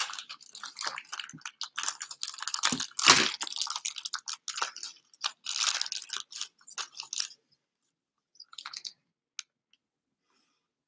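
Plastic toy packaging crinkling and crackling as hands rummage through it for about seven seconds, loudest around three seconds in. After that, only a few faint handling clicks.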